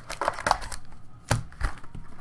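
Foil-wrapped trading card packs and cards being handled and set down on a felt-covered table: a light rustle and clicks, then two sharp taps in the second half.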